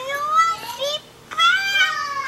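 A young child's high-pitched voice in two short stretches, with a brief pause about a second in.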